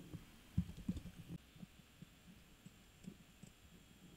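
Faint, irregular soft taps and thumps from a computer mouse being clicked and handled on a desk. They come thickly in the first second and a half and more sparsely after, over a faint steady high whine.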